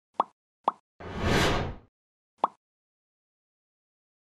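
Sound effects of an animated channel-logo intro: two quick pops, a short rushing whoosh that swells and fades about a second in, then a third pop.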